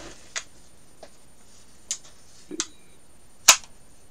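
Small plastic wireless mice being handled and checked for batteries: a few scattered sharp clicks and light knocks, the loudest a sharp click about three and a half seconds in.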